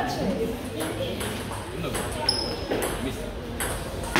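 Table tennis ball clicking off bats and the table as a point is played, over voices talking in the hall.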